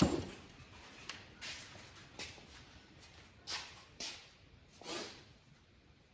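A short sound right at the start that dies away quickly, then a handful of faint, brief scuffs and taps spread through the rest, as of someone moving about and handling things.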